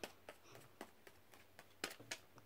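Near silence: faint room tone with a few short, faint clicks scattered through it.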